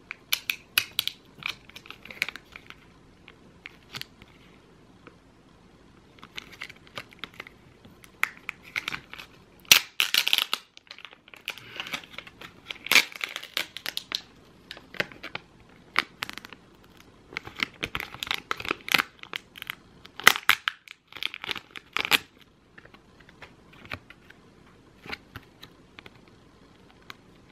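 Foil-and-plastic sachet of a lip mask crinkling and crackling as it is handled and cut open with scissors, then the clear plastic tray holding the gel mask crinkles as it is pulled apart. The sound comes as scattered short crackles and snips in uneven clusters.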